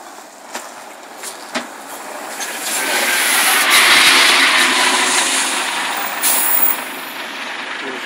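Scania articulated city bus driving past close by. Its engine and tyre noise swells to a peak as it goes by and then eases off as it moves away, with a short hiss of air about six seconds in.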